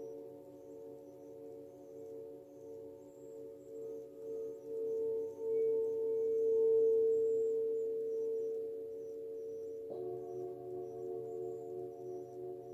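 Hand-held singing bowl rubbed around its rim with a mallet: one steady ringing tone with a pulsing wobble that quickens as it swells to its loudest midway, then eases off. About ten seconds in, a struck tone at different pitches sets in and rings on.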